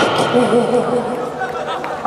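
A woman's trot vocal sung into a handheld microphone, holding a note with a strong, even vibrato while the backing music drops out, over noise in the hall.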